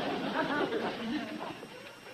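Indistinct chatter of several men's voices with no clear words, fading away over the second half.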